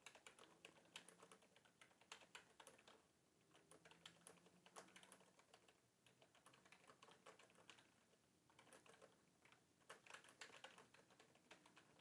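Faint typing on a computer keyboard: runs of quick key clicks, thinner in the middle.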